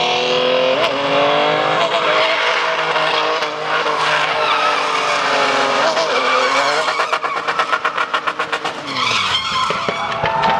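A Toyota Land Cruiser SUV's engine is held at high revs while the truck spins donuts, its tyres squealing and skidding on asphalt. The engine note wavers up and down, then pulses rapidly, about ten times a second, from about seven to nine seconds in, and drops off near the end.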